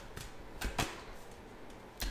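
Tarot cards being taken from the deck and laid on a tabletop: a few faint clicks and taps, two close together a little before the middle.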